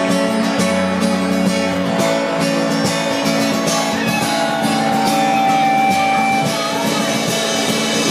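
Live band music led by a steadily strummed acoustic guitar, with a single note held for a second or so around the middle.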